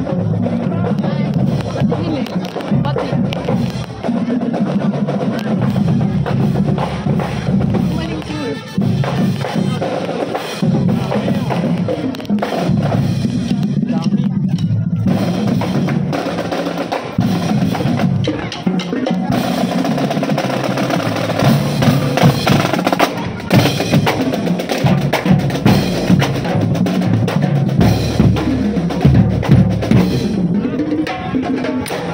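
Marching band playing as it passes: snare drum rolls and bass drum beats under brass and saxophones. The drum hits get louder and sharper over the last several seconds.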